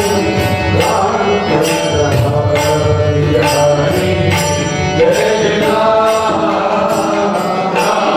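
Marathi devotional bhajan: male voices singing an abhang to harmonium and tabla, with metallic hand-cymbal (taal) strokes keeping time about twice a second.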